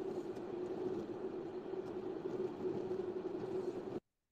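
Steady background noise with a low hum from an open phone microphone on a voice chat, cutting off suddenly at the end.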